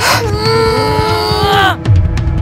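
A girl wailing in a single drawn-out cry that is held for about a second and a half and then drops in pitch, over background music with a steady beat.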